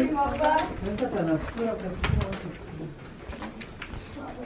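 Indistinct voices in a small stone tunnel, fading out about halfway through, followed by a few light taps.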